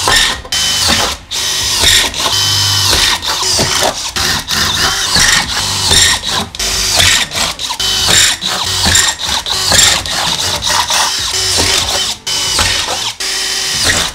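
Cordless drill with a 3/16-inch bit drilling screw holes through the van's metal rear-door panel, in a series of short runs that start and stop again and again.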